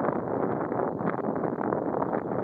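Wind buffeting the camera's microphone: a steady rushing noise with short irregular crackles.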